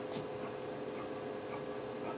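A blade cutting through fabric along a ruler on a cutting mat: a few short scratchy strokes, over a steady low hum.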